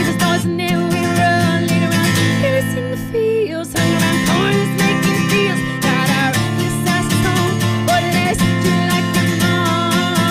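Solo acoustic guitar strummed with a woman singing a melody along with it, performed live. The strumming thins out briefly about three seconds in, then comes back in full.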